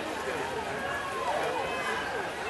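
Distant voices of several people calling and shouting at once, over a steady outdoor hiss.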